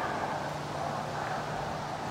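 Steady outdoor background noise with a faint, even low hum and no distinct events.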